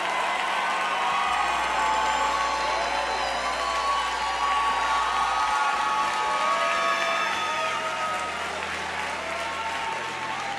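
A large church congregation applauding, with scattered cheers and shouts of voices over the clapping, easing slightly near the end.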